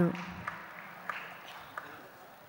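A woman's voice over a microphone trailing off at the very start, then low hall ambience with a few faint clicks.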